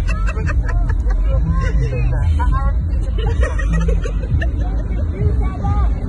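Crowd babble: many people talking at once close by, over a steady low rumble.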